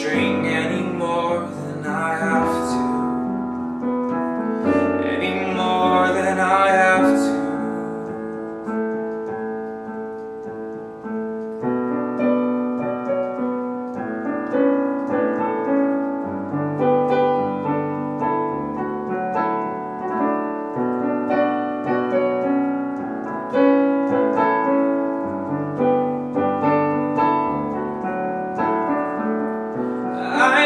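Stage keyboard playing a slow chordal accompaniment in an electric-piano voice. A wordless sung line wavers over it for the first several seconds, then the keyboard carries on alone as an interlude.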